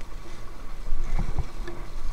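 Fast, choppy river water rushing and splashing around an inflatable kayak, with a few low thumps a little over a second in.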